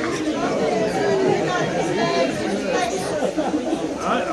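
Several people talking at once close to the microphone, with overlapping voices that form an indistinct chatter.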